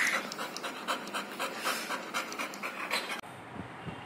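A dog panting quickly and rhythmically, about five breaths a second, cutting off suddenly about three seconds in.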